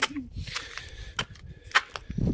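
Footsteps on a gritty concrete floor, with a few sharp scrapes and clicks spaced about half a second to a second apart.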